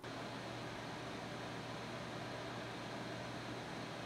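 Steady fan noise: an even whoosh over a low hum, holding level throughout and cutting off abruptly.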